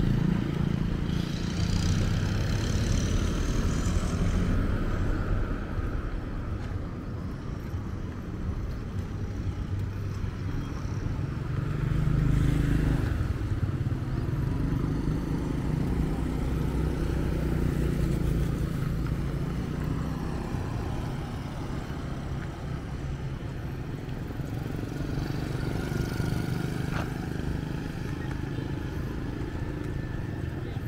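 Road traffic: motorbike and pickup truck engines passing by. It swells loudest right at the start and again about twelve seconds in, then eases.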